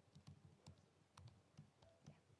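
Faint typing on a computer keyboard: a quick, irregular run of key clicks as a command is entered.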